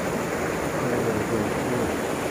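Steady rush of a river flowing: an even, unbroken noise.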